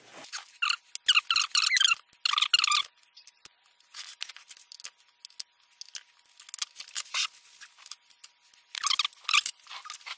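Wood screws being backed out of the end of a Dino Baffetti melodeon with a screwdriver: short high-pitched rasping bursts of rapid ticks about a second in, again at two and a half seconds and near the end, with small clicks between.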